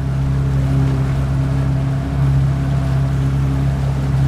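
Motor cabin cruiser's inboard engine running at steady cruising speed, a low even hum, with the rush of water along the hull.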